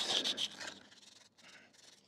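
Hand sanding of a rough metal threaded pump shaft with 220-grit sandpaper, a scratchy rubbing that fades out about a second in. The shaft is being smoothed so that it will slide back into the seal.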